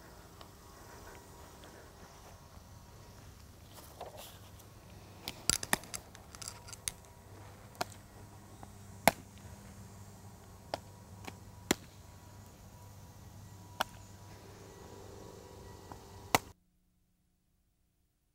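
Sharp pops of a softball smacking into leather fielding gloves as two pitchers play short-range catch, over a faint steady hum. There is a quick flurry of pops about five to seven seconds in, then single pops every second or two, and the sound cuts off suddenly near the end.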